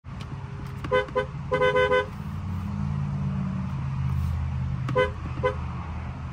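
2022 Dodge Challenger R/T Scat Pack Widebody's two-tone horn sounded in quick taps from the steering-wheel pad: two short toots about a second in, a longer blast of about half a second, then two more short toots near the end. A low steady hum runs underneath.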